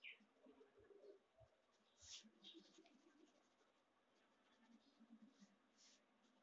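Faint, intermittent scratching of a pencil drawing short strokes on paper.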